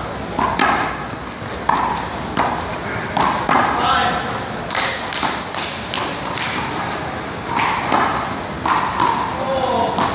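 A small rubber ball being struck by hand and rebounding off a concrete wall during a one-wall handball rally: sharp smacks and thuds coming every half second to a second throughout.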